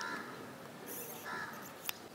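Two faint, harsh crow caws about a second and a half apart, with a short click near the end.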